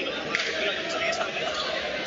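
A basketball bouncing a few times on the court, over the steady chatter of a crowd.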